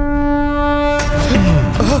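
Dramatic background score: a long held horn-like note over a low drum rumble, broken about a second in by a loud crash, after which wavering 'aa aa' vocal chants begin.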